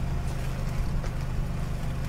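A vehicle engine idling nearby: a steady low hum.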